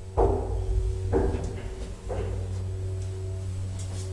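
KONE hydraulic elevator running with a steady low hum and a faint whine, with three dull knocks about a second apart in the first half.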